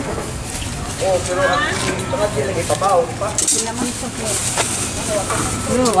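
Several people talking in the background, with a steady hiss rising behind the voices in the last second and a half.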